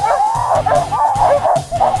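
A team of harnessed sled dogs barking, yipping and howling all at once in an unbroken, overlapping chorus. This is the excited din of a team hooked up to a tied-off sled, eager to run.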